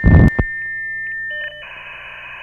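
Electronic end-card sound effect: a short, loud, distorted burst, then a steady high electronic beep. About one and a half seconds in it switches to a different tone over a hiss, like a dial or radio tone.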